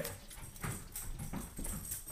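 A small dog's paws knocking and scrabbling on a hardwood floor as it runs after a thrown tennis ball: a few soft, irregular taps.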